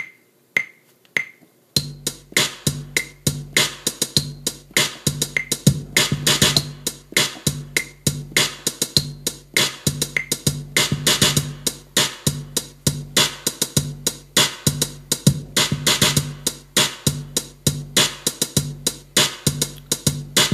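iMaschine drum machine app on an iPad: metronome count-off clicks at an even pace, then about two seconds in a looping dubstep-kit beat starts, with a deep sustained bass, hi-hats and claps. Snare hits are tapped in on the pads over the loop as it records.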